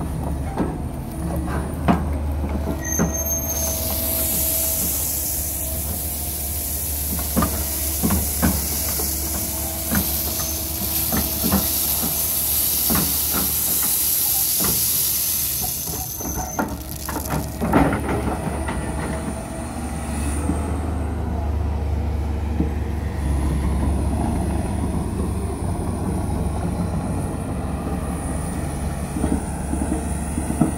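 A Kobelco hydraulic excavator's diesel engine runs steadily, with clanks and knocks from the bucket and tracks. A loud hiss from about 4 to 16 seconds goes with gravel and dirt being dumped from the bucket into the trench.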